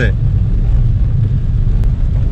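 Steady low rumble of a car driving on a wet road, heard from inside the cabin, with a single faint click near the end.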